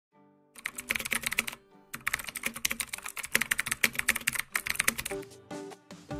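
Rapid run of clicks like typing on a keyboard over soft background music. The clicks start about half a second in, pause briefly before the second mark, then carry on until just before the speech begins.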